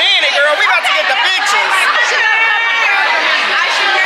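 Several women's voices talking excitedly over one another close to the microphone.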